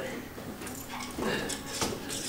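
Faint, indistinct voices with a few soft knocks in a classroom.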